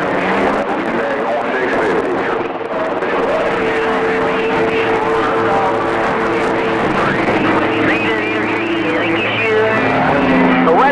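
CB radio receiver audio on channel 28 during skip. Static carries faded, overlapping distant stations, and from about four seconds in, several steady tones hold over the noise until near the end.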